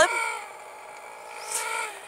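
A young child's drawn-out vocal sound: one held, sung-out note that sags a little in pitch, lasting about two seconds.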